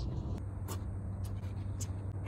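A low steady rumble with a few light scratchy clicks, like a phone being handled.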